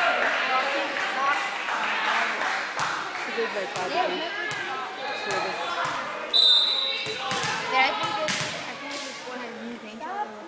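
Crowd chatter in a gym, with a volleyball bounced several times on the gym floor by the server and a referee's short whistle about six seconds in, signalling the serve.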